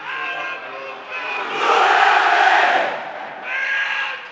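Large crowd of football supporters chanting in unison. About one and a half seconds in, a loud burst of shouting and cheering swells up and dies away by about three seconds. Then the chanting resumes.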